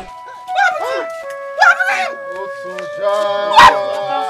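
Sad film music with long held notes, over a woman's anguished wailing cries in three short bursts; the loudest comes near the end.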